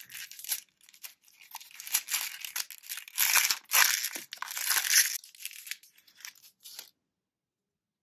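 A thin white wrapper crinkling and rustling in irregular bursts as it is unfolded by hand from a small watercolour pan. It is loudest in the middle and stops about a second before the end.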